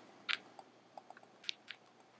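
A handful of short, soft rustles and clicks of close handling noise, the sort made while a phone is pocketed.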